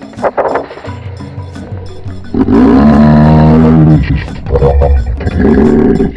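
Background music with a loud, drawn-out animal call that falls in pitch about two seconds in, followed by a shorter call near the end.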